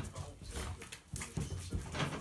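A small puppy and a larger dog playing, making short, irregular dog noises amid the sounds of their movement.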